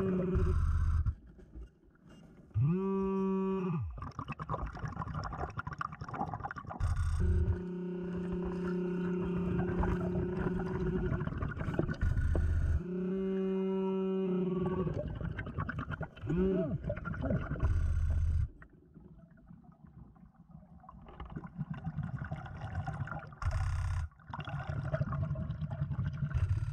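Underwater metal detector sounding its target signal over lead fishing weights: a steady low tone held for several seconds at a time, and shorter tones that rise and fall in pitch as the coil passes over a target.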